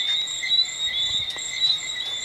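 Steady, dense high-pitched chirping of a nighttime chorus of small creatures calling together without a break.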